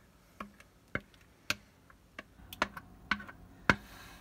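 A spoon knocking and scraping against a plastic mixing bowl as thick casserole batter is scraped out into a baking dish: a run of sharp, irregular clicks, about two a second.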